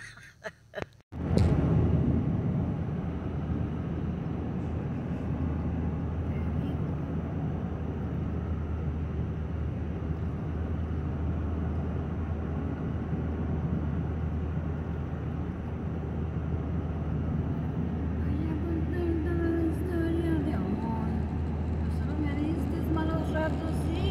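Steady road noise inside a moving van: a low engine-and-drivetrain drone under an even hiss of tyres on the road, starting about a second in after a brief gap. A faint voice comes in near the end.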